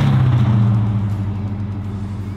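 1968 Dodge Charger's 440 cubic-inch V8 with a six-barrel carburettor setup, just past the camera and driving away, its exhaust note fading as it recedes.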